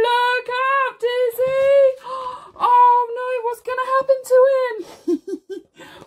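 A woman's voice singing a short sing-song tune, holding notes at a nearly steady high pitch, then a few short, lower voiced sounds about five seconds in.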